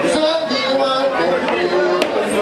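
Several voices singing together in a crowded hall, the notes held and gliding slowly, with crowd chatter mixed in.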